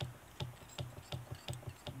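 Fly-tying bobbin wrapping thread around a hook shank held in a vise, giving a quick run of faint light ticks, about four to five a second, one with each turn of the thread.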